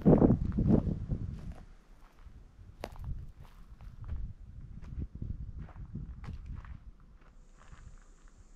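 Footsteps of a person walking, heaviest and loudest in the first second or two, then softer scattered crunches and clicks.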